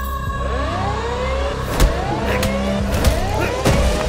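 Film motion-poster background score: a steady low drone under repeated swooping, rising-and-falling sound effects, with sharp hits about two, three and three and a half seconds in.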